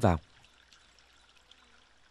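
Faint trickle of water running through an open bamboo trough.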